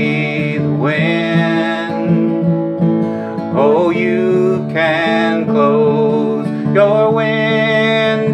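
A man singing long, wavering held notes to his own acoustic guitar, strummed steadily underneath.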